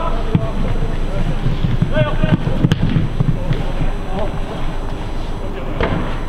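Outdoor football match sound: low rumbling noise on the microphone under faint shouts of players, with one sharp knock a little under three seconds in.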